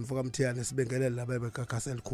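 Speech only: a man talking into a studio microphone.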